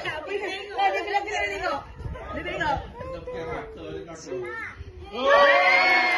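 Several people in a family group talking over one another, then a high voice breaking into a loud, drawn-out exclamation about five seconds in.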